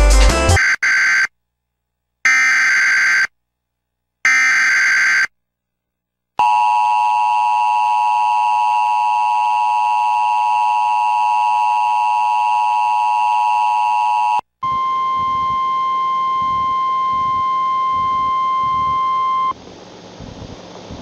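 US Emergency Alert System tornado warning on television: three roughly one-second bursts of screeching digital header data, then the steady two-tone attention signal held for about eight seconds, then a single steady tone for about five seconds.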